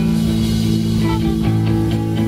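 Rock band playing live without vocals: electric guitars and bass holding sustained chords, the low bass note changing about a second and a half in.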